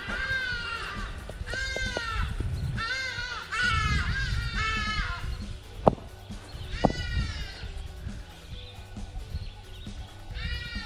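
An animal calling in a series of short, arching cries, about six of them, most in the first five seconds and one more near the seventh second. Two sharp knocks come just before and with the last cry.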